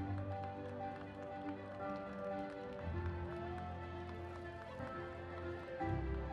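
Music with held notes over a deep bass that changes note about every three seconds.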